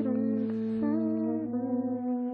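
Several male voices humming in harmony over a steady low held drone, the upper voices stepping to new pitches a few times while the bass holds.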